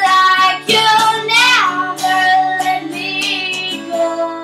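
A young woman singing with her own acoustic guitar, strummed steadily beneath the voice. She holds long sung notes, one of them bending downward about halfway through.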